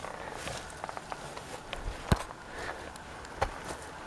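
Footsteps and light knocks on a forest path, with scattered clicks and one sharp click about two seconds in.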